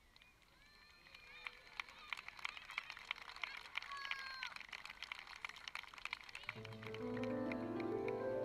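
Scattered clapping from an audience, with a few voices and a whistle, in a gap between two pieces of music. About six and a half seconds in, music starts again with a rising run of notes.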